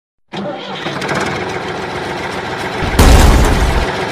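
An engine starting and running, with a much louder, deeper rumble about three seconds in.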